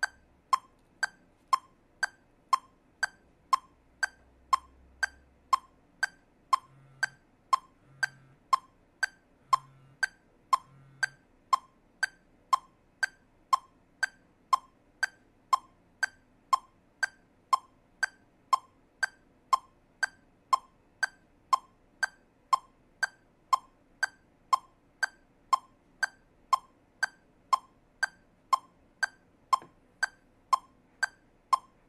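Metronome set to 60 with the beat subdivided into eighth notes, clicking evenly about twice a second.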